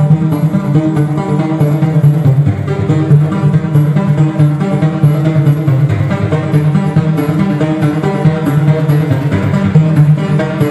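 Live electronic techno track with a steady beat, a bass line and regular hi-hat ticks, played from a laptop and synth keyboard, with no vocals yet.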